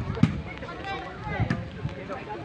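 Spectators' voices and shouts from a large crowd, with two sharp hits of a volleyball being struck about a second and a quarter apart.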